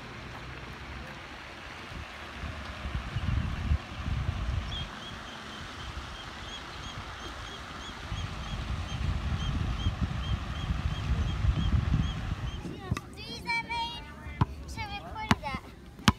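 Wind buffeting the microphone over a steady rush of water from lake fountains, with a small bird chirping again and again, about twice a second, through the middle. Near the end, voices and a few sharp knocks.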